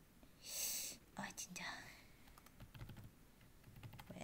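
Faint computer keyboard typing with scattered small clicks, after a short breathy whisper about half a second in.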